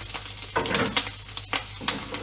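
Two slices of bacon sizzling in a frying pan, with four or so sharp crackles spread through the sizzle.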